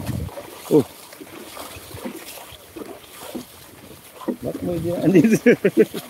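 People's voices in short bursts of talk or calling out, once briefly near the start and more densely near the end, over a quiet outdoor background.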